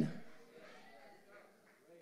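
The last word of a man preaching dies away in the room's echo within the first half second, then near silence: faint room tone.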